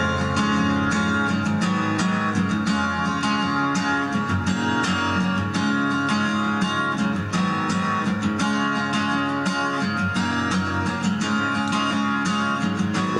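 Instrumental intro of a pop song, led by an acoustic guitar strummed in a steady rhythm over sustained chords, with no vocals yet.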